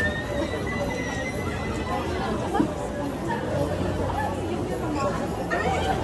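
Crowd chatter: many people talking at once, no single voice standing out.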